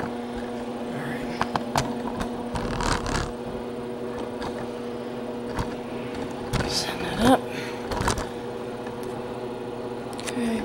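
A steady low machine hum runs throughout, with scattered light clicks and knocks and a short rising voice-like sound about seven seconds in.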